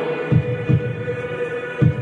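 Instrumental stretch of a recorded metalcore song: a held, droning chord with three deep drum thumps, no voice yet.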